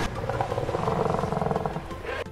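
A film creature sound effect: the giant Skullcrawler, a reptilian monster, lets out one long, rough growling roar that eases off near the end.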